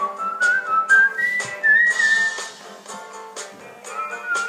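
A man whistling the song's melody over a backing track with guitar and a steady beat: a phrase of notes stepping upward for the first two and a half seconds, then a short gap in the whistling while the backing plays on.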